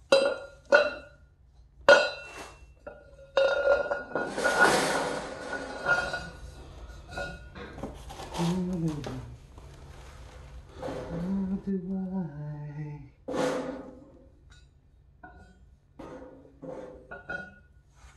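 Steel parts of a folding hitch cargo rack clanking and ringing as they are handled and set down on a tile floor: a few sharp clanks in the first seconds, a longer scrape about four seconds in, then scattered knocks.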